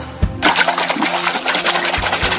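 Water splashing and sloshing, starting about half a second in, over low sustained background music.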